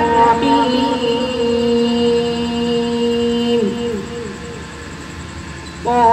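A boy's voice reciting the Quran in melodic style, holding one long steady note for about three and a half seconds before it falls away. After a short quieter gap, the recitation resumes near the end with an ornamented, winding line.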